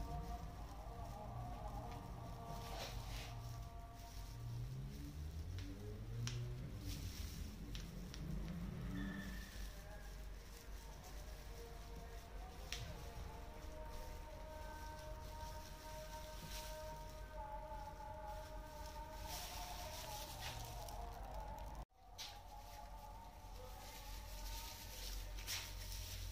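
Faint background music with sustained tones, over soft brushing and patting as hair-straightening cream is worked through the hair with a tinting brush. The sound cuts out for an instant near the end.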